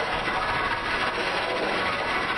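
Steady, harsh, noise-like distorted audio from effect processing, without beat or tune.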